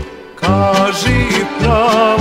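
A male vocal group comes in singing a Serbian folk song about half a second in, after a brief drop in the music. Underneath is accordion accompaniment with a steady pulsing bass-and-chord beat.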